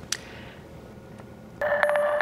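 Quiet studio background with a brief click, then about one and a half seconds in, a newscast transition sting starts suddenly: bright, steady electronic tones over rapid ticking.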